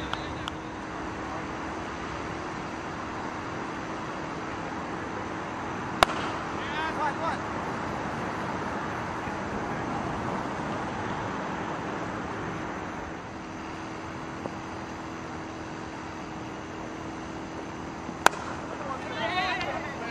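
Two sharp cracks of a cricket bat striking the ball, about twelve seconds apart, each followed by players' shouted calls, over steady outdoor background noise with a faint low hum.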